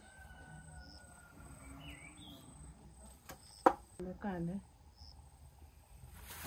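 Quiet outdoor background with faint bird chirps. A single sharp click comes a little past halfway, followed by a brief low vocal sound.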